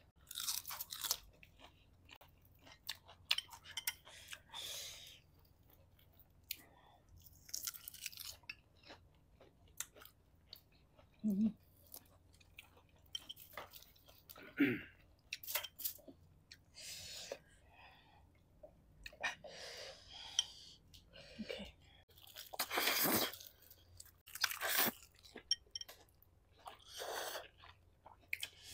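Close-miked eating sounds: people chewing and crunching on spicy noodles, prawns and raw vegetables, with irregular short clicks and bursts of mouth noise.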